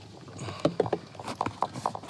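Irregular knocks, clicks and rubbing from a phone being handled and moved around inside a car, starting about half a second in.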